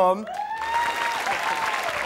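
Studio audience applauding, starting about half a second in.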